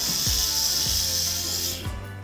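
A Hyper Yo-Yo Accel spinning in the hand makes a steady, high hissing whir that cuts off near the end, over background music with a low beat.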